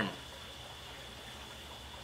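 Steady background hiss with a faint, steady high whine and a low hum underneath; no distinct sounds stand out.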